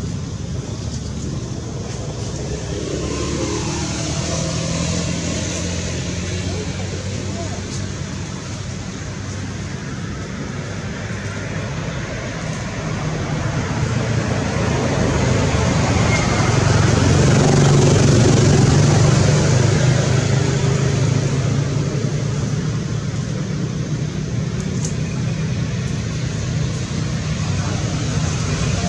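Steady engine rumble of road traffic, growing louder a little past the middle and easing again, with indistinct voices.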